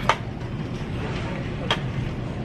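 Retail store background noise: a steady even hiss, broken by two short sharp clicks, one right at the start and one near the end.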